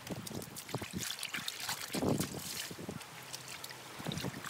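Water sloshing and splashing in a plastic basin as white clothes are worked by hand in rinse water to get the soap out, with a louder slosh about two seconds in.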